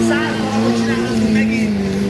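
A sport quad bike's engine running steadily, mixed with music and a singing voice.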